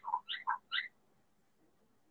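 A few short, faint, thin fragments of a man's voice in the first second, trailing off after the last word, then near silence.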